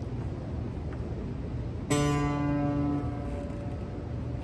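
Acoustic guitar: a single chord strummed about halfway in, left ringing and slowly fading. Before it there is only a low background rumble.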